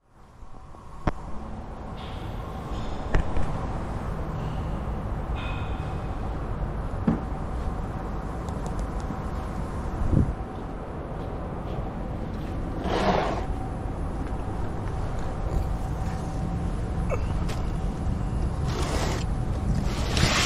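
Steady low rumble of a workshop bay with a faint hum, broken by a few sharp knocks and clatters and a short hissing burst about thirteen seconds in.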